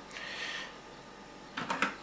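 Faint handling noise: a short soft hiss, then a few light clicks near the end as fingers take hold of the blue plastic screw cap of an empty 5-litre water bottle.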